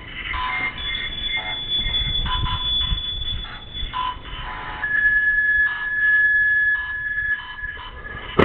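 Spirit-box app output: choppy, rapidly switching fragments of electronic sound. A steady high tone runs over them, and a second, lower steady tone joins about five seconds in.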